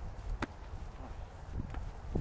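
Low outdoor rumble of wind on the microphone, with one sharp click about half a second in.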